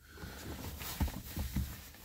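Faint rustling and a few soft knocks as a person ties trainer laces, about a second in and twice more after.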